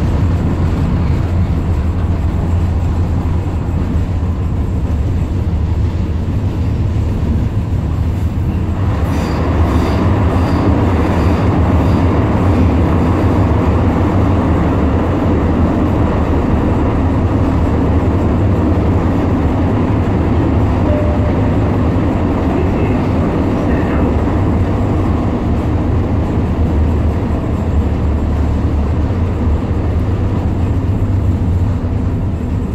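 Tyne and Wear Metrocar (Class 994) heard from inside the passenger saloon while running, a steady deep rumble of wheels and running gear. About nine seconds in the running noise turns brighter and a little louder, with a few sharp clicks over the next few seconds.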